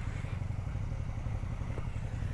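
A motorcycle engine running with a low, steady note as the bike comes slowly down the lane.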